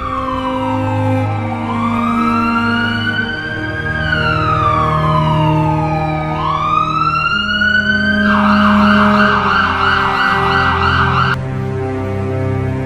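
Ambulance siren sounding a slow wail that falls and rises twice, then switches to a fast yelp for about three seconds before cutting off suddenly near the end.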